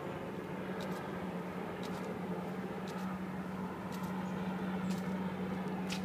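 Outdoor city ambience: a steady low engine-like hum that grows a little stronger about halfway through, over a general background wash, with light footsteps on pavement about once a second.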